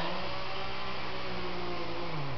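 Steady motor drone of a chainsaw running at a distance at an even speed.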